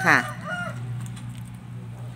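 A chicken clucking once, briefly, over a steady low hum.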